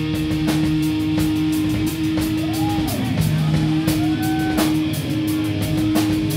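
Live rock band playing an instrumental passage: electric guitar holding sustained notes with a couple of pitch bends, over drum-kit hits and cymbals.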